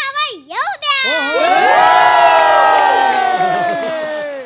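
Studio audience cheering in one long shout of many voices together, slowly falling in pitch and dying away near the end. A single voice comes briefly before it.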